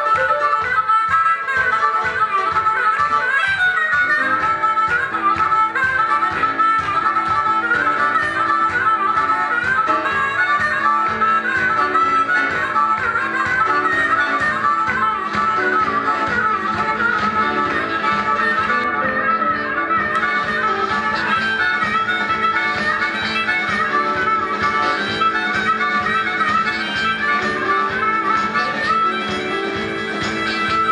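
Amplified blues harmonica solo, the harp cupped tight against a hand-held microphone, played over a live band with a fast, steady beat.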